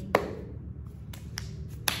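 A few sharp clicks: a loud one just after the start, two or three faint ones in the middle, and another loud one near the end, over a low steady room hum.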